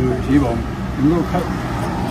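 Roadside outdoor noise: a truck's engine running on the road close by, a steady low rumble, with people's voices faintly over it.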